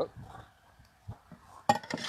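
Cocktail shaker being handled before shaking: a few faint knocks, then a sharp clink near the end.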